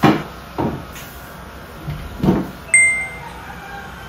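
A small round table being moved into place: its legs knock and bump against the floor three times. A short high ping sounds about three-quarters of the way through.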